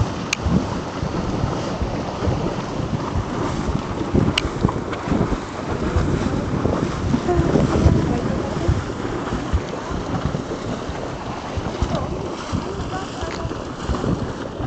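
Steady, loud rush of a geothermal steam vent jetting steam, with wind buffeting the microphone.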